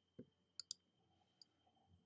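Near silence broken by a few faint, short clicks, two of them close together about half a second in and a last one near a second and a half.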